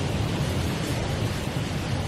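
Steady background noise in the room, an even hiss with a low rumble underneath, with no clear event in it.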